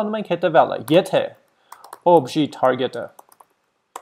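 A man talking while typing on a computer keyboard, with light key clicks between his phrases, about a second and a half in and again near the end.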